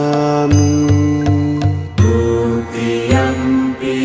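Devotional Buddhist chant sung in long held notes over a musical backing, with a low pulsing beat through the first half.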